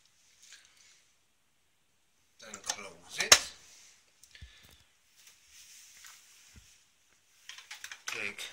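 Clear plastic lid of a Brunton H2O Hydrolyser's water tank being lowered and snapped shut, a short rattle of plastic handling ending in one sharp click about three seconds in, with a few faint knocks and clicks afterwards.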